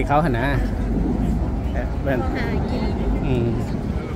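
Pedestrians talking over a steady low rumble of road traffic. A voice is close by at the very start, and quieter chatter follows.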